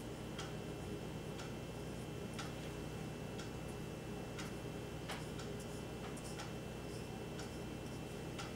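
Faint, steady ticking, about one tick a second.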